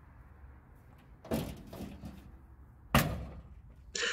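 A steel door of a 1963 Chevrolet Impala SS convertible pushed shut, latching with one sharp thud about three seconds in. A softer, shorter scuff comes about a second and a half before it.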